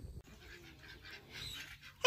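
Faint animal calls.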